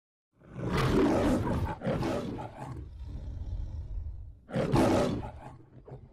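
The Metro-Goldwyn-Mayer logo's lion roar: two roars in quick succession, a lower growl, then a third loud roar near the end that trails off.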